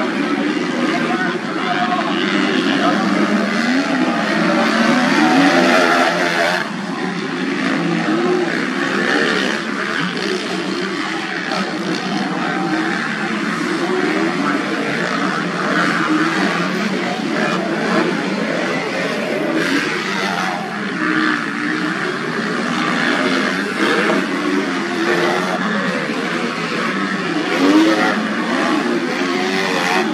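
Engines of 250 cc motocross bikes racing on a dirt track, their pitch rising and falling over and over as the riders open and close the throttle through the corners and jumps.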